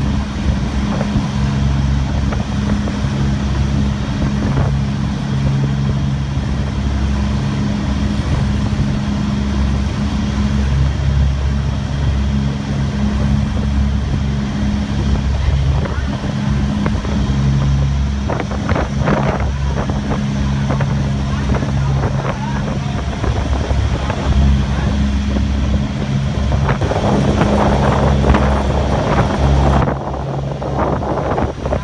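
High-speed passenger ferry's engines running at cruising speed, a steady low drone over the rushing noise of the wake and wind. Rougher bursts of noise come in briefly around two-thirds of the way through and again near the end.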